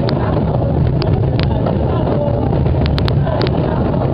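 A great mass of cajones played at once by a crowd, blurring into a loud, continuous drumming din with no single beat, with scattered sharp clicks above it.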